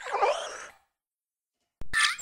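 Cartoon sound effects for an animated desk lamp: a creaky squeak that bends up and down in pitch for under a second, a pause, then a sudden sharp sound and a rising squeak near the end.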